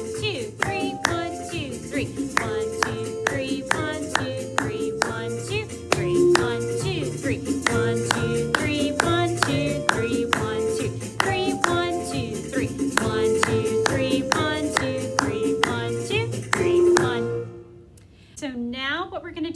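Hands clapping the rhythm of a Latin American folk tune in three time, over recorded music with melody and bass playing the tune. Claps and music stop together shortly before the end.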